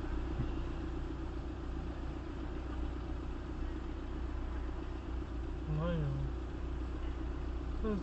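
Car engine idling steadily while stopped, heard from inside the cabin as a low, even hum.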